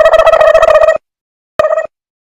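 Edited-in comedy sound effect: a fast-pulsing trill at one steady pitch lasting about a second, then a short burst of the same trill near the end.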